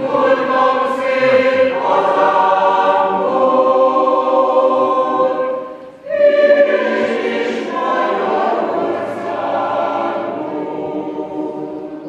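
Mixed choir of men's and women's voices singing sustained chords, with a brief break about halfway through before the next phrase comes in.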